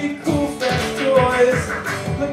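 Live acoustic duo: a Yamaha acoustic guitar strummed in a steady rhythm with hand-played beats on a Roland HandSonic electronic percussion pad, and a man singing over them.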